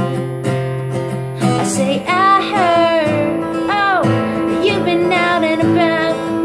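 Acoustic guitar strummed steadily, with a woman singing over it; in the middle she holds and bends long notes.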